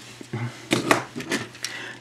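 Hard plastic toy robot and train parts clicking and knocking as they are handled and set down on a wooden tabletop, with several sharp clicks in the second half.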